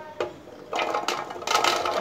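Small falsa berries sliding off a plate and rattling into an empty plastic blender jar, beginning a little under a second in and getting louder near the end.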